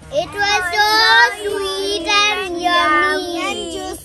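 Several young children singing together without accompaniment, a short tune of drawn-out notes that fades out near the end.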